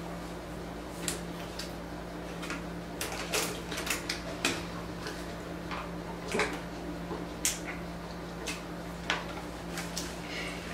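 Scattered short clicks and crinkles, bunched about three to four and a half seconds in, from eating fries and handling a plastic water bottle, over a steady low hum.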